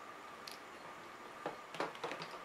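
Plastic water tank of a Home Touch Perfect Steam Deluxe garment steamer being handled and set back into the steamer's base: a faint click about halfway through and two light knocks near the end.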